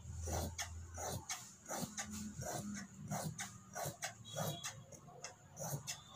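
Large steel tailor's shears cutting cotton cloth on a tabletop: a steady run of blade snips, about two a second.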